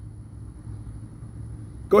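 Low, steady outdoor background rumble with a faint, thin high tone held over it.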